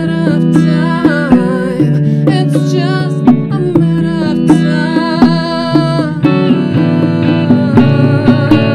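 A woman singing with vibrato, accompanied by a small live band: electric bass playing a steady line, hand-struck bongos, and electric guitar.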